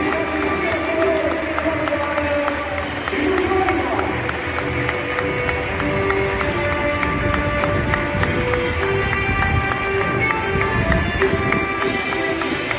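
Music playing over a football stadium's public-address system, with crowd noise and scattered voices beneath it.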